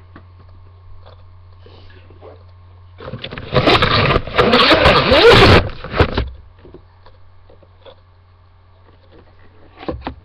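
Loud, rough rubbing and scraping on a webcam's built-in microphone as the camera is handled and moved, starting about three seconds in and lasting about three seconds, over a steady low hum.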